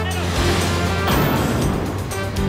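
Television sports ident music with a rushing swoosh effect that swells and peaks about a second in, over a steady low drone.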